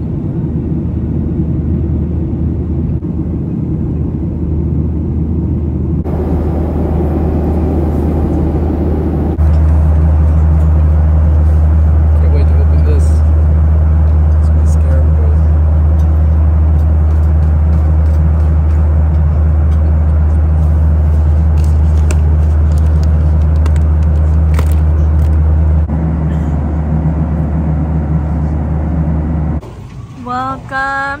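Airliner cabin noise in flight: a loud, steady low rumble of the jet engines and airflow, stepping abruptly in level a few times.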